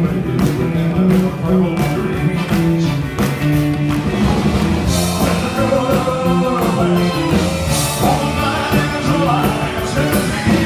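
Live rock and roll band playing an up-tempo number with drums, bass and guitar on a steady beat; a man's lead vocal comes in about halfway through.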